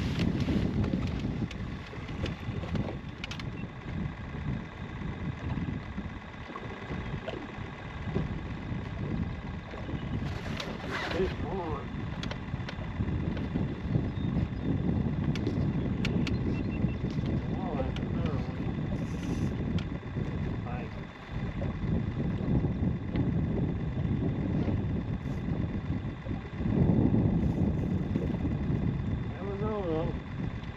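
Gusty wind rumbling on the microphone in an open fishing boat, rising and falling in strength, with a faint steady high whine underneath.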